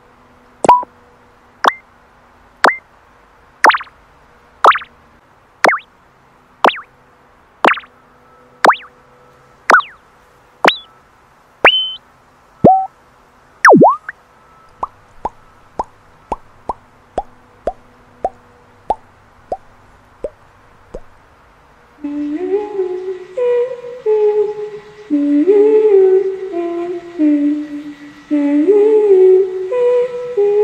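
A run of short, bright electronic selection blips, about one a second, each a quick slide in pitch. From about halfway, quieter and quicker pop or bloop effects follow, about two a second. From about 22 seconds in, a voice hums a short tune.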